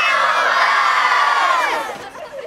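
A large group of children cheering and shouting together, many high voices at once, fading away near the end.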